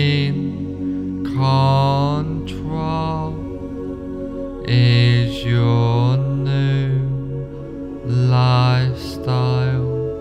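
Meditation music of low chanted vocal tones, each held for about a second and stepping between a few low pitches over a steady drone.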